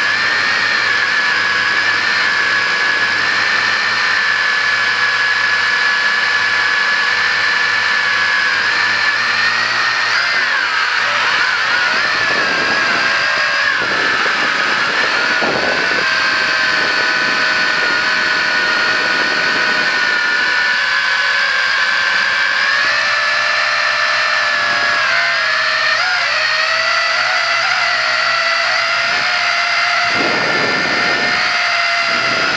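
Quadcopter's electric motors and propellers whining steadily, heard close from the onboard camera. The pitch wavers and shifts in the middle and again near the end as the craft manoeuvres.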